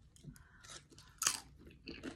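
A person biting and chewing a crunchy chip with artichoke dip, with one louder crunch a little past halfway.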